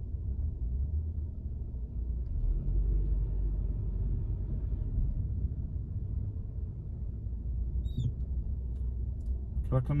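Low, steady cabin rumble of a car's engine and road noise, heard from inside the car as it creeps along in slow traffic.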